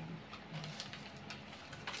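Faint crinkles and light clicks of thin foil baking cups being pulled apart and handled, with a sharper crackle about a second in and another near the end.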